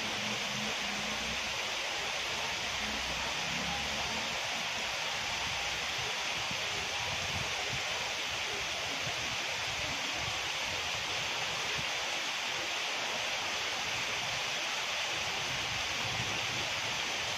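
Heavy rain falling steadily, a continuous even hiss.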